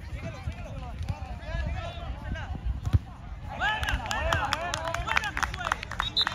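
Spectators shouting and calling out indistinctly at a youth soccer match, growing louder and more excited a little past the halfway point, with a few sharp clicks among the voices. A low rumble of wind on the microphone runs underneath.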